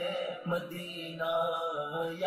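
A man singing an Urdu naat (a devotional song in praise of the Prophet), drawing out long held notes.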